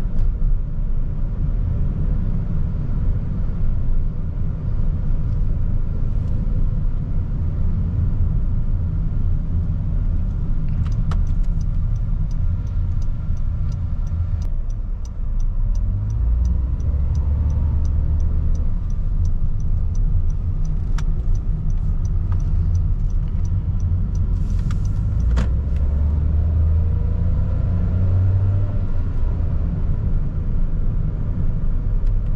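Cabin sound of a Honda N-BOX on the move: a steady low rumble of its small engine and tyres, swelling a little twice. For about thirteen seconds in the middle an even ticking of a few ticks a second runs over it, like the turn-signal indicator.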